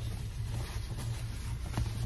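Steady low hum inside a car's cabin, typical of the engine idling, with a faint tap near the end.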